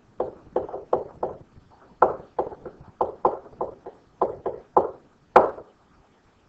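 A stylus tapping and scratching on a pen-tablet surface during handwriting, heard as a quick, irregular run of short knocks at about three a second. The loudest knock comes near the end, and the knocks stop just before it finishes.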